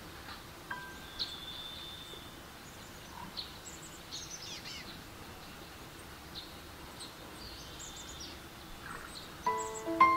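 Faint bird calls, short high chirps and quick falling trills, scattered over a steady soft background noise. Near the end, soft piano music begins.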